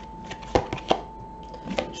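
Tarot cards being handled, drawn from the deck and laid down on a table: a few short sharp taps, the two loudest about half a second and a second in.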